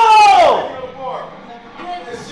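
A man shouting encouragement, "Let's go!", ending in a long "go!" that falls in pitch over about half a second.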